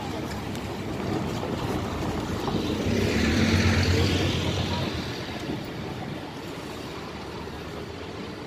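Double-decker bus running close by, a low engine rumble with a rush of noise that swells to its loudest about three to four seconds in, then fades away.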